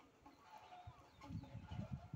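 Soft low thuds of hands pressing and patting wet mud onto a hand-built clay stove, growing denser in the second half, with birds calling in the background.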